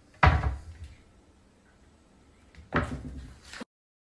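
Kitchen wall-cupboard doors banging open and shut: a sharp knock just after the start, the loudest sound, then a second, longer clatter near the end that stops abruptly.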